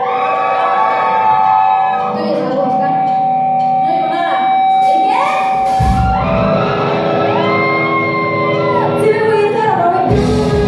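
Live rock band playing: electric guitars holding long sustained notes with a voice singing over them, and the bass and drums coming in heavily about halfway through.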